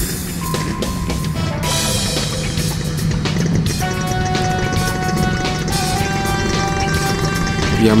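Background music with long held notes, over a steady low rumble.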